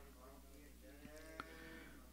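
Near silence: room tone with a low steady hum and a faint click about one and a half seconds in.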